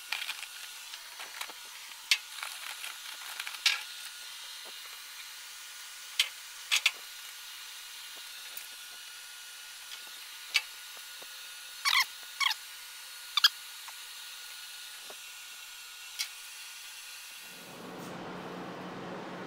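Scattered short scrapes and clicks, about ten of them, of 80-grit anti-slip traction tape being pressed and rolled down onto checker-plate steel, over a steady thin hiss.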